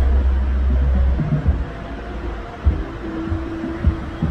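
Busy city-plaza ambience: a heavy low rumble for about the first second, then a few scattered thumps and a brief steady hum near the end.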